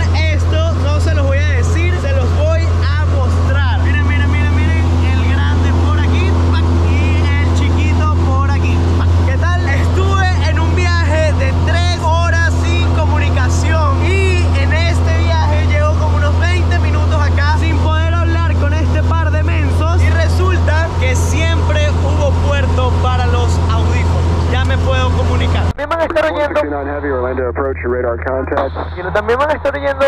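Loud, steady drone of a Cessna 172 Skyhawk's piston engine and propeller, heard inside the cabin in flight, with a man's voice talking over it. About 26 seconds in, the drone drops sharply to a much lower level and the sound turns thinner.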